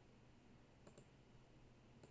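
Near silence with faint computer mouse clicks: a quick pair close together about a second in, and another at the very end.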